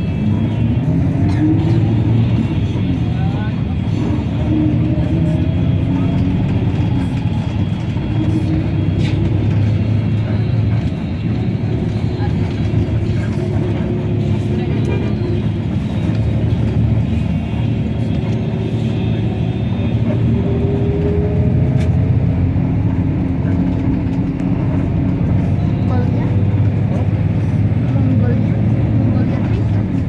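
Bus engine running with road noise, heard from inside the passenger cabin. The engine note rises and falls as the bus changes speed.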